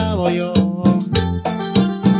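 Korg iX300 arranger keyboard playing an instrumental passage: a lead melody that slides down in pitch near the start, over auto-accompaniment bass and drums with a steady beat.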